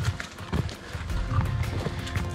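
A hiker's footsteps on a dirt and rock forest trail, a step every half second to second. Background music with steady held tones plays underneath.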